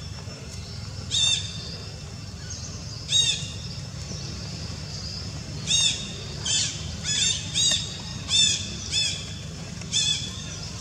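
A bird calling repeatedly: short, high, arched squawks, about nine of them, sparse at first and coming faster in the second half, over a steady low background hum.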